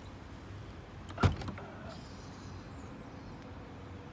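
Trunk latch of an Audi S4 releasing with a single sharp clunk about a second in, followed by the manual trunk lid swinging up.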